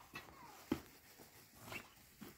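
Faint footsteps scuffing on dry, stony dirt, with one sharper knock about two-thirds of a second in.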